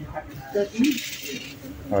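A thin plastic shopping bag rustling for about a second as it is handled at a bakery counter, with a man's brief words around it.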